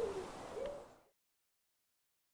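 A dove cooing faintly: the tail of one low note, then a short, slightly rising note. The sound then cuts off completely about a second in.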